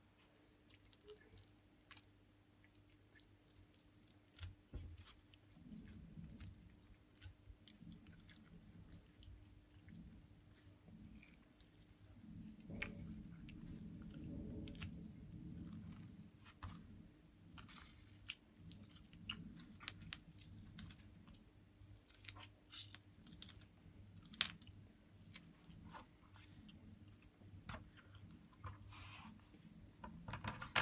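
Faint wet crackling and squelching of raw, partly frozen fish flesh being pulled away from the ribs and backbone by fingers, with scattered small clicks. A faint steady hum runs underneath.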